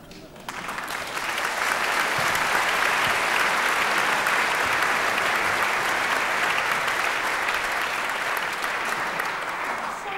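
Theatre audience applauding, building up over the first second or two, holding steady, and easing off slightly near the end.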